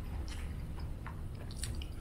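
A person chewing a mouthful of beef-and-rice burrito with the lips closed: soft, wet mouth sounds and small scattered clicks over a steady low hum.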